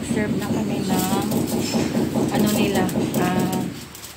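A voice over a fast, even rattle.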